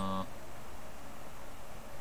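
A man's brief low vocal sound, falling in pitch and over within the first quarter second, followed by a steady hiss of background noise.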